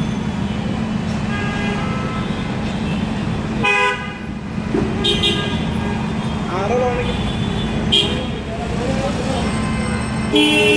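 Busy street traffic with a steady engine hum, broken by short vehicle horn toots about three times, the loudest a little before four seconds in. Voices are in the background.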